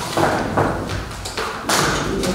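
Sheets of paper rustling as they are leafed through, then a louder rustle and knock near the end as the stack of papers is squared against the table.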